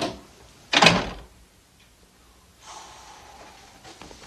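A room door being shut: a sharp knock at the very start, then the louder thud of the door closing under a second later.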